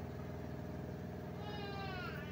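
A cat meowing once near the end, a single short call that bends in pitch, over a steady low background hum.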